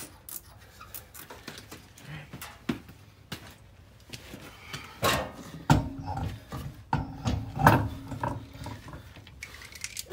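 Handling noises of a car wheel being fitted onto the hub: light clicks and rubbing at first, then several louder knocks and rattles from about halfway through as the wheel goes onto the studs.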